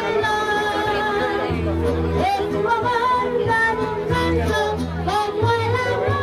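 A boy singing into a corded handheld microphone, his voice holding long notes, over a musical accompaniment with low bass notes that come in blocks.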